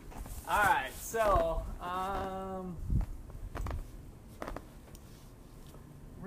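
Brief voice sounds in a small room: short wordless vocal sounds, then a held pitched vowel. A knock follows about three seconds in, with a couple of faint clicks after it.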